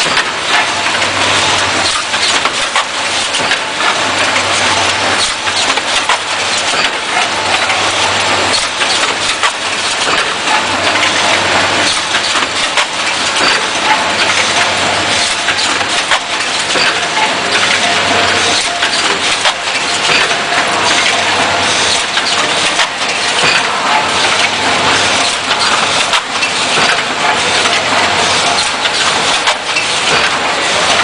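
Automatic ampoule blister packing line running: a steady mechanical din of dense clicking and clattering over a low hum.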